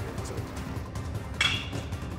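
A baseball bat meets a pitched ball once, about one and a half seconds in: a sharp crack with a brief ringing tail. Background music plays throughout.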